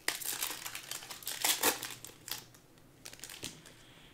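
Shiny foil wrapper of a Panini Select basketball card pack being torn open and crinkled. It starts suddenly with irregular crackling bursts, then fades to a few faint rustles and clicks after about two and a half seconds.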